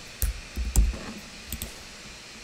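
A few separate clicks and soft low thumps of keys being typed and clicked at a computer, with faint room noise between them.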